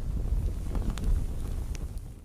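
A low, noisy rumble carried on from the intro music and its boom, fading out near the end.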